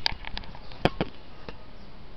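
Handling noise from the camera being adjusted by hand: a few sharp taps and knocks, the loudest just under a second in, followed by a second knock.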